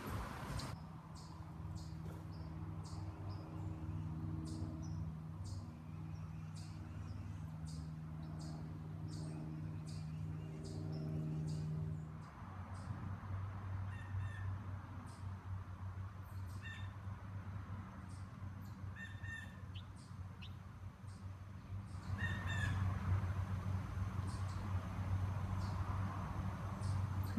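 Small birds chirping and calling in short, scattered notes over a steady low hum. The hum's pitch drops about halfway through.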